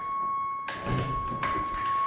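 Elevator firefighters' operation key switch being worked by hand, with two short clicks about two-thirds of a second apart, over a steady high-pitched tone.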